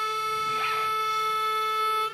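A single long harmonica note held steady in pitch, with a rich, reedy set of overtones.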